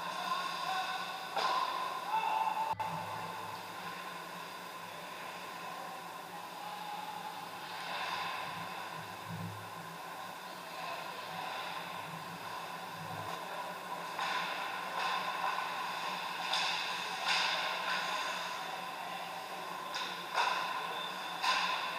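Ice hockey play in an indoor rink: skate blades scraping on the ice and sticks working the puck, with several louder scrapes near the end, over a steady background drone.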